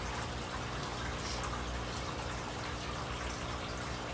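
Steady trickle of running water with a faint low hum, typical of aquarium filters running, and a few faint soft clicks.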